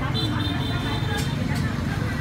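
Busy street ambience: a steady low rumble of traffic with people chattering in the background, and a thin high tone lasting about a second near the start.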